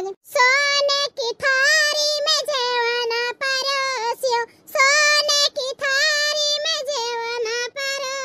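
High-pitched, pitch-raised cartoon voice talking in a sing-song way, in long held phrases broken by short pauses.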